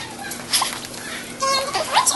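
Indistinct children's voices, with short loud bursts about half a second and a second and a half in.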